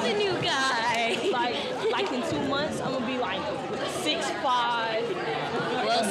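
Several voices talking and exclaiming over one another: excited group chatter, with no single speaker clear.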